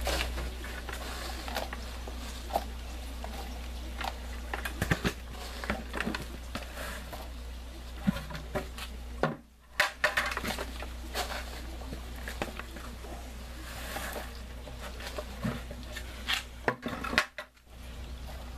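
Scattered light clicks and clatter of soil mix and containers being handled in a plastic barrel, over a steady low rumble. The sound breaks off briefly about nine and a half seconds in and again shortly before the end.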